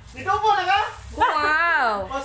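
A high-pitched voice making two drawn-out wordless sounds, the second a long cry that falls in pitch.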